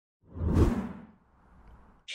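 A whoosh transition sound effect for an animated logo: one swell that comes in about a quarter second in and fades away within a second, with a faint low tail near the end.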